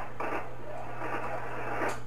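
Amateur HF transceiver's speaker hissing between transmissions on a 40-metre voice contact: faint receiver noise cut off above about 3 kHz, over a steady low hum, with a single click near the end.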